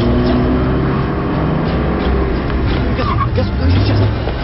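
Car engine running, heard from inside the cabin, under urgent shouted dialogue in a TV drama soundtrack.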